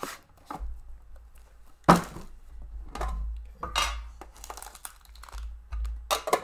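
Trading card packaging being torn open and crinkled by hand: a series of sharp rips and rustles, the loudest about two seconds in.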